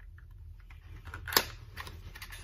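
A small cosmetics product box being handled: a run of light clicks and rustles of packaging, with one sharper snap about a second and a half in.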